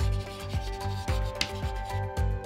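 Chalk scratching on a chalkboard as a line of lettering is written out, over background music with a steady beat.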